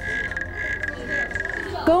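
A frog calling: one steady, high-pitched trill that stops shortly before the end.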